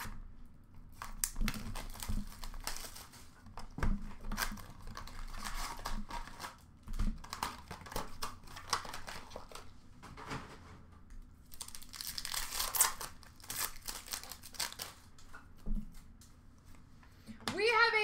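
Foil trading-card pack wrappers crinkling and tearing as packs are opened and cards handled, in irregular bursts. A man's voice starts just before the end.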